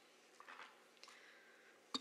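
Near silence: faint room tone, with a few soft, faint noises and a single sharp click near the end.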